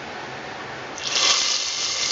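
Hot ghee tempering with whole cloves, cinnamon and cardamom poured into a pot of mutton curry gravy. It sizzles suddenly and loudly about a second in, then hisses on steadily.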